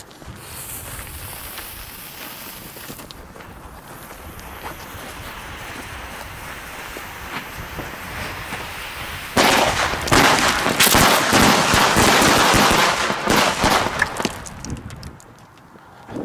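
A firecracker chain (Böllerkette) on the ground. Its lit fuse hisses steadily for about nine seconds, then the chain goes off in a rapid, dense string of bangs lasting about five seconds, which stops shortly before the end.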